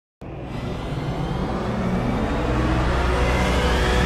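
Intro music opening with a low rumbling swell that grows steadily louder, a build-up into a heavy rock theme.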